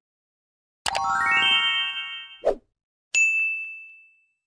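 Subscribe-button animation sound effects. About a second in, a rising run of chime notes is held for over a second; then comes a short click, and finally a single notification-bell ding that rings out and fades.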